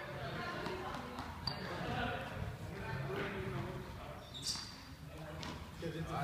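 Light thuds and knocks of juggling balls being caught and hitting the floor, a few sharp ones standing out, with faint voices underneath.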